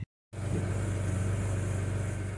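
BMW N52 3.0-litre straight-six idling steadily, its exhaust camshaft timing freshly corrected to cure the 2A99 exhaust VANOS fault. The sound cuts in after a split-second gap at the start.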